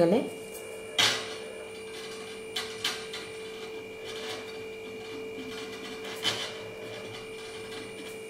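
A few light knocks and handling noises from a pen and cotton cloth being worked on a wooden tabletop, the loudest about a second in, over a steady electrical hum.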